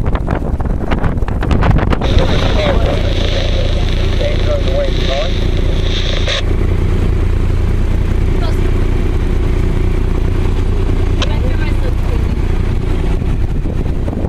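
Steady low rumble aboard a moving sailboat, wind on the microphone over the boat's motor drone, with indistinct voices. A high whine comes in about two seconds in and cuts off sharply a little past six seconds.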